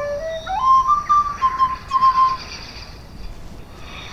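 A small end-blown flute playing a short phrase: one low held note, a quick climb of about an octave, then a few held high notes, stopping a little past halfway.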